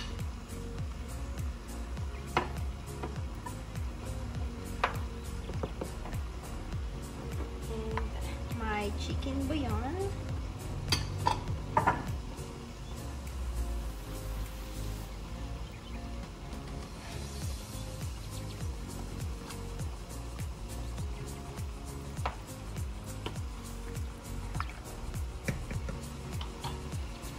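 Upbeat background music over the knocks and scrapes of a wooden spoon stirring bell peppers into a pan of chicken in tomato sauce, with a plate clinking against the pan. A few sharper knocks stand out about halfway through.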